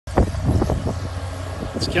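Case IH 2188 combine's diesel engine running with a steady low drone as the machine drives off, with a few sharp knocks in the first second. A man's voice starts just at the end.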